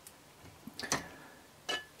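A few small clicks of a yellow XT60-style plastic power connector being pulled apart and handled, the sharpest about a second in.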